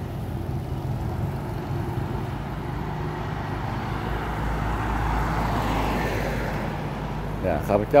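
Street traffic: a motor vehicle passing, its engine and tyre noise swelling to a peak about five seconds in and then easing, over a steady low engine hum. A man's voice starts near the end.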